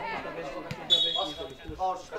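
Referee's whistle blown once, a single steady shrill note just under a second long starting about a second in, stopping play for a foul. Spectators' voices call out around it.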